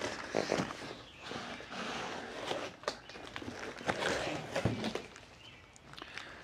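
A long cardboard shipping box being opened by hand: irregular scraping and rustling of cardboard flaps and plastic wrap, with a few sharp knocks.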